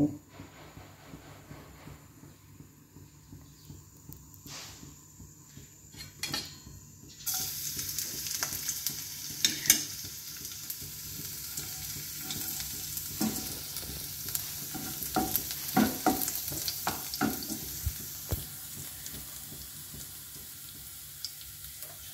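Chopped garlic sizzling in hot oil in a non-stick wok, the hiss starting suddenly about seven seconds in and holding steady, with a wooden spatula clicking and scraping against the pan as it is stirred. Before the sizzle, only a few light knocks.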